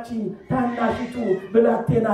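A voice chanting a liturgical hymn in Ge'ez or Amharic, with long held notes and sliding pitch and a short break about half a second in.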